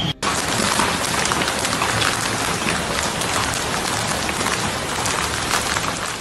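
Hailstorm: hail and rain pelting the ground and foliage in a dense, steady patter of many small impacts.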